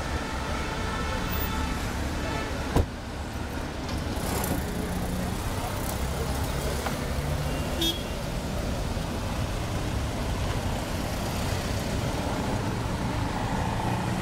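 A car pulling away through steady road traffic noise, with engine rumble throughout. A held horn tone sounds over the first few seconds and ends at a sharp click about three seconds in.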